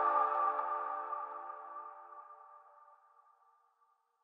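The last chord of an electronic station-ident jingle, several steady tones held together and dying away by about the middle.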